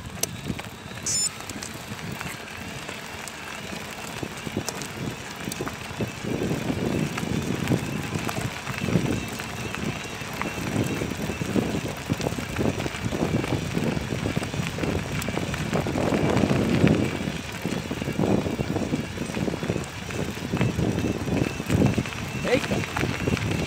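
Wind buffeting the microphone in irregular gusts, which grow stronger about six seconds in, over the rolling and rattling of a bicycle riding a gravel track.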